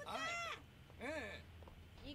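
A woman's voice speaking two short Japanese words of film dialogue, one at the start and one about a second in, each high-pitched and rising then falling.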